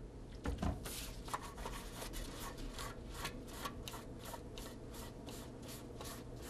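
A hand rubbing briskly back and forth over the side of a plastic model freight car, in quick even strokes about four a second, wiping off paint loosened with window cleaner. There is a low knock just before the rubbing starts.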